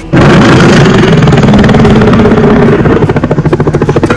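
A loud mechanical whirring, like an engine or helicopter, cuts in suddenly just after the start and flutters rapidly toward the end.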